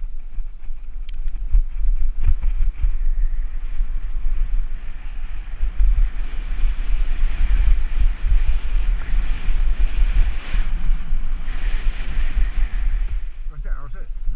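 Wind buffeting the microphone of a mountain bike camera as the bike runs fast down a dirt and gravel track, with a steady hiss of tyres on the loose surface that swells midway. A man's voice starts just before the end.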